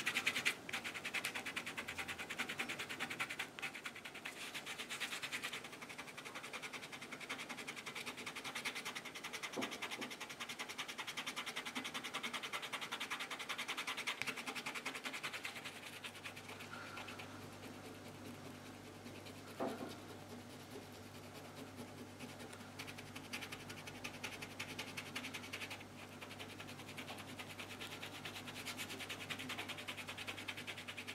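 Fingertips rubbing damp paper off a dried Mod Podge image transfer: a quiet, continuous scratchy rubbing of many quick strokes. The softened paper backing is being rolled away so that only the printer toner image stays on the card.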